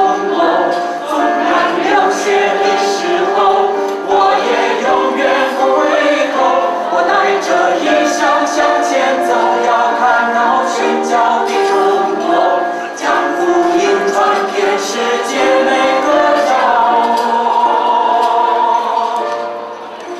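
Mixed choir of men's and women's voices singing a Chinese Christian song in sustained phrases, with brief breaks between phrases.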